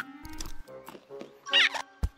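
Cartoon rodent characters' squeaks and chattering over a film score, with a loud, wavering squeal about one and a half seconds in and a low thump at the very end.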